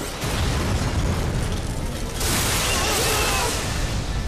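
Cartoon action sound effects: a continuous deep rumble, then about two seconds in a loud crashing blast with a long hiss as a robot is struck and knocked to the ground.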